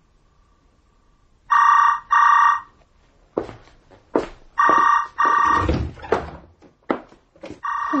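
Telephone ringing in the British double-ring pattern: a pair of short rings about every three seconds, three pairs in all, the last starting near the end. Between the second and third pairs come a few knocks and thuds.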